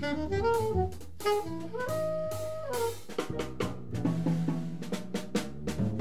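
Live jazz combo playing: an alto saxophone plays a melody line with one held note near the middle, over a drum kit with cymbal and drum strikes and a double bass.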